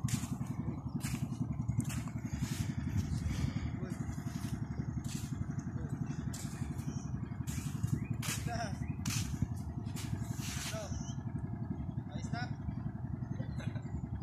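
A small engine running steadily with a fast, even pulse, overlaid with frequent short clicks.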